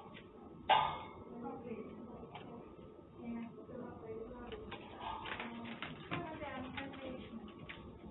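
Faint voices talking, with one sharp knock a little under a second in.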